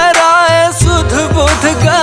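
Hindi pop love song: a wavering, ornamented sung melody over a deep bass beat that comes in about half a second in.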